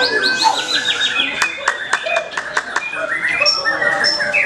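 White-rumped shama singing: a fast run of repeated down-slurred whistled notes, then sharp clicking notes mixed with short high whistles.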